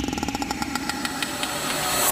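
Logo-intro sound effect: a fast, even train of clicks like an engine revving, over a slowly falling whoosh.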